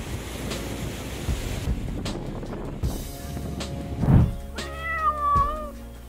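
A cat meowing once, a long, slightly falling call of about a second near the end, over background music. Before it there is a stretch of noise from surf and wind.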